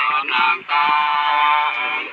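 Sli folk singing of Lạng Sơn: a voice holding long, drawn-out notes, with one brief break a little after half a second in.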